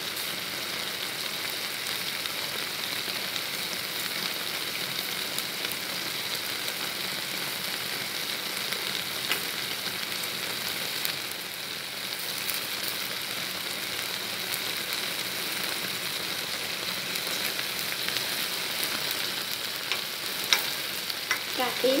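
Eggplant, minced pork and scallions sizzling steadily as they fry in a stainless steel pot, with a few faint clicks.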